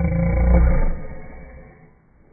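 A loud, low-pitched, drawn-out vocal sound from a person right at the microphone, loudest in the first second and fading away by the end.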